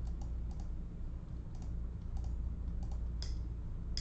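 A few scattered key taps, like keys being pressed while working out a figure, over a steady low hum.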